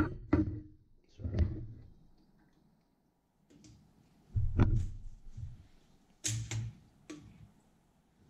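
Metal kitchen tongs clacking and knocking against a container as strips of marinated beef are lifted out: a handful of separate knocks with pauses between, the loudest about four and a half seconds in.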